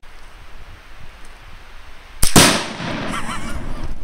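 A Tannerite exploding target detonating when shot: a sharp crack and then, almost at once, a very loud blast about two seconds in, with a long rumbling tail.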